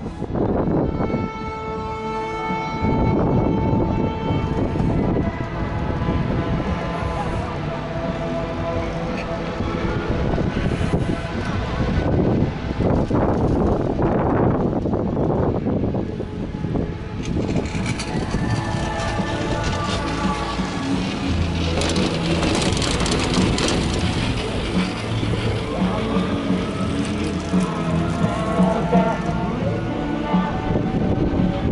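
Strong wind buffeting the microphone in uneven gusts, with music carried over it in held notes that change every few seconds.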